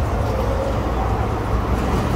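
A 208/230 V three-phase, belt-driven kitchen exhaust fan motor starting up and spinning up, with a faint tone that rises in pitch about a second in, over a steady low rumble.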